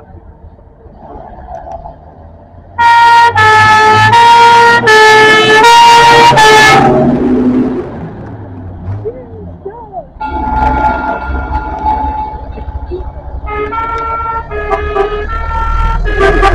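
Two-tone vehicle horn sounding loudly, alternating between two pitches at about one note every half second. A quieter horn and engine rumble follow, then the alternating two-tone horn starts again near the end.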